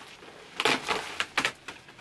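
Large black plastic trash bag rustling and crinkling in a few short bursts as it is carried and set down.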